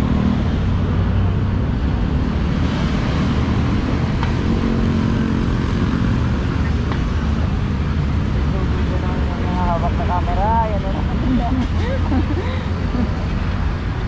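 Steady low rumble of wind on the microphone and road traffic while riding a bicycle along a seaside boulevard, with a voice heard briefly about ten seconds in.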